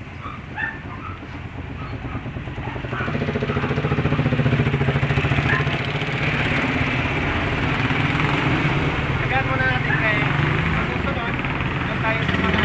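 A motorcycle-type engine running close by: it grows louder over the first few seconds and then keeps up a steady drone, with faint voices in the background.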